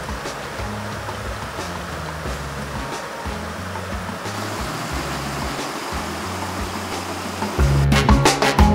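Stream water rushing over rocks, a steady even hiss, with a background music bass line underneath. Louder music comes in near the end.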